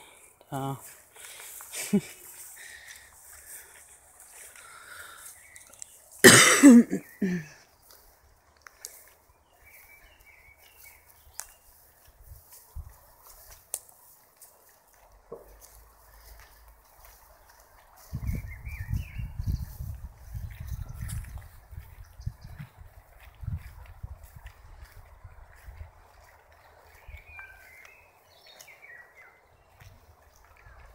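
A person laughing out loud once, briefly, about six seconds in. Later there is a low rumble lasting several seconds.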